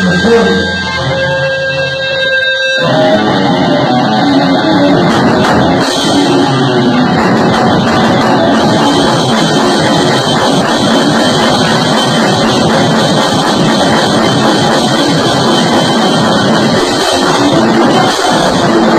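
Live rock band: a held electric guitar tone rings for about three seconds, then the drums and guitars come in together and play on loudly.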